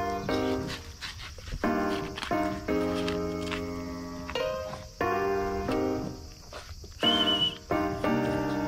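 Background music of keyboard chords, changing every second or so, with a brief high wavering tone about seven seconds in.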